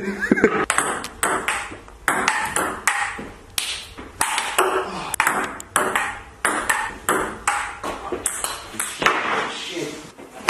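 Ping-pong ball clicking against paddles and the table in a fast rally, with uneven hits several times a second.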